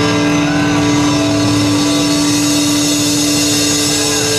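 Live rock band holding one long, loud distorted chord: electric guitars sustaining a steady note under a wash of cymbals, the held closing chord of a song.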